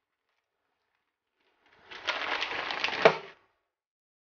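Dry instant ramen block and its plastic packet being handled, a dense crackling and crinkling of about a second and a half that starts about two seconds in, with one sharp crack near the end.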